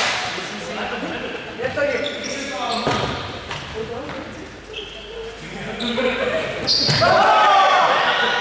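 A rubber ball thudding and bouncing on a sports-hall floor, echoing in the large gym, with short sneaker squeaks as players move. Players shout loudly near the end.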